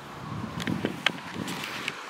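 Handling noise from a handheld camera being turned around: rustling with a few light clicks.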